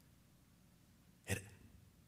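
Near silence, room tone in a pause of a man's speech, broken about a second and a half in by one short spoken word.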